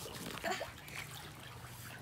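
Quiet sloshing and trickling of pool water stirred by someone climbing onto a floating foam float.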